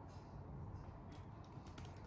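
Faint typing on a laptop keyboard: a few light key clicks, mostly in the second half, over a low steady room noise.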